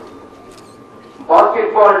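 A man's voice announcing a trophy award, beginning about a second and a quarter in, after a quiet stretch with a faint steady tone.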